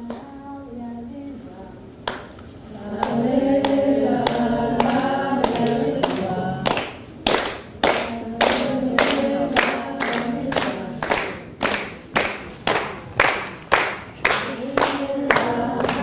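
A group of people singing together, softly at first and much louder from about two seconds in. From about six seconds in, steady hand claps keep the beat, about two to three a second.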